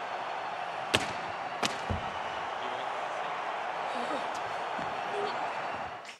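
Steady crowd noise on a televised wrestling broadcast, with two sharp knocks about one and one-and-a-half seconds in and a duller thump just after.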